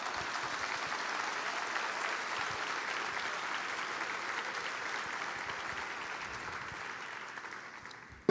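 A seated audience applauding: many people clapping steadily, slowly dying down toward the end.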